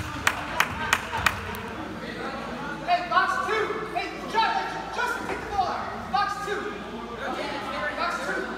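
Hands clapping in a quick, even rhythm for the first second or so, then indistinct voices calling out in the gym.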